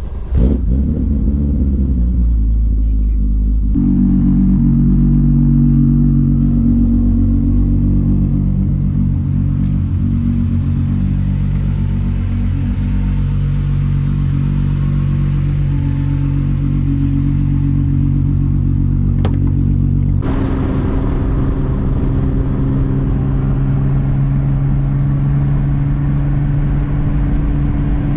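Volkswagen Mk3's engine running in a steady drone, heard in three cuts that change abruptly about four seconds in and again about twenty seconds in. In the last part the car is on the move, with road and wind noise over the engine.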